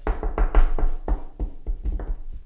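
Fingers drumming and knocking on a wooden tabletop in a quick, irregular run of taps, about six a second, close to the microphone: an imitation of the unexplained tapping noises heard in the house.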